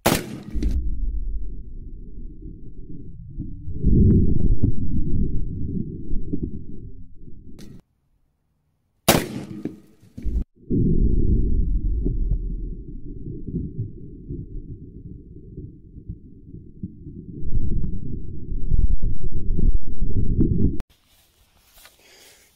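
AR-15 rifle shots firing .223 rounds into a ceramic body-armour plate: a sharp shot right at the start and another about nine seconds in. Between them, long stretches of heavy, muffled low rumble, like wind buffeting a microphone.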